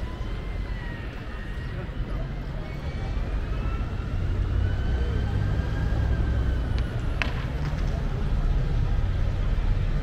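City street traffic: a low vehicle rumble that builds about three seconds in, with a faint whine slowly rising and falling in pitch, and one sharp click about seven seconds in.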